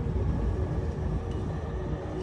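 Background music with a deep, rumbling bass and low held notes that shift in pitch.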